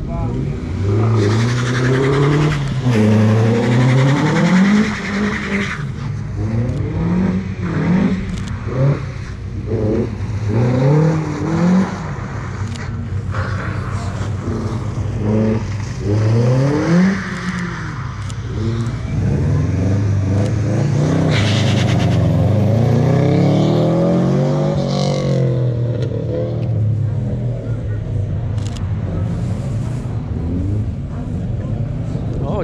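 A car engine revving up and dropping back again and again as it is driven hard through a tight cone course. About two-thirds of the way through there is a longer, steadier climb in revs before it falls away.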